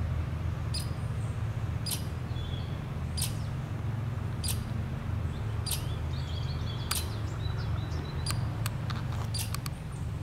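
A small rodent's sharp chip calls, repeated about once a second and coming faster, several close together, near the end, over a steady low rumble.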